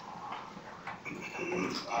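Quiet, indistinct murmuring voice and room noise, with no clear words.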